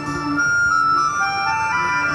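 Synthesizer improvisation played through a portable speaker: held electronic tones with a melody that steps up in pitch near the end, over a repeating low bass note that drops out for about a second. A steady waterfall rush sits under it.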